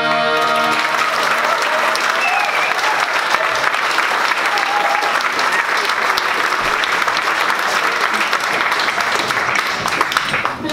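Audience applauding after a traditional Irish tune; the tune's last notes fade out in the first half-second as the clapping begins.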